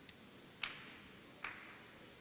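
Two short, sharp clicks a little under a second apart over a faint steady hiss, with a much smaller tick just before them.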